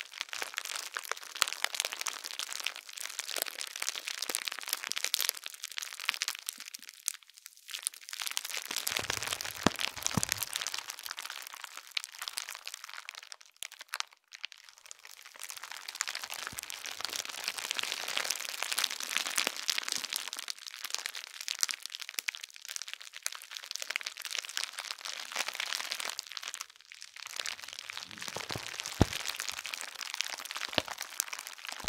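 Hard plastic bubble wrap, folded in layers, being squeezed and rubbed by hand: a dense crackle of many small clicks that comes in waves, with brief lulls about 7 seconds in, at about 14 seconds and near 27 seconds.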